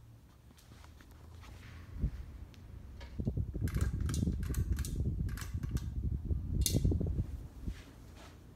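Hunter Vista ceiling fan with an AirMax motor running, a faint steady hum. From about three seconds in until near the end, air from the fan buffets the microphone in a loud, fluttering low rumble with scattered sharp clicks.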